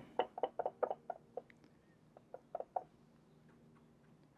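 Light taps and clicks of watercolour tools being handled: a quick run of about eight in the first second and a half, then a few more a little after two seconds.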